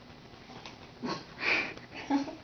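Stifled laughter: a few short bursts of breath through the nose, the loudest about a second and a half in, from someone trying not to crack up.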